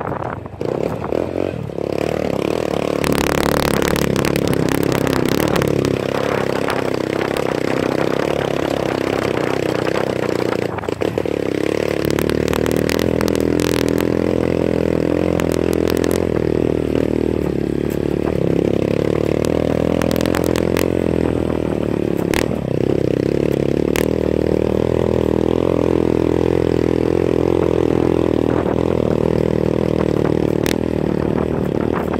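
A small motorcycle engine running steadily under load on a climb, easing off briefly about a second in and again around eleven seconds. Scattered clatters and knocks from the bike jolting over the rough road.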